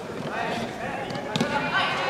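A judoka dropping onto the tatami mat during a throw attempt, with a dull thud about a second and a half in, over shouting voices in the hall.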